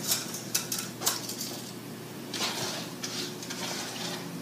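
Wooden spoon scraping and knocking in a skillet and against a metal muffin tin as a thick suet mixture of bacon fat and seeds is scooped into paper baking cups. There are a few sharp clicks in the first second, then softer scrapes.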